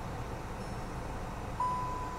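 2021 Volkswagen Jetta R-Line's turbocharged four-cylinder idling smoothly just after starting, a low steady hum heard from inside the cabin. Near the end a single steady electronic beep from the car sounds.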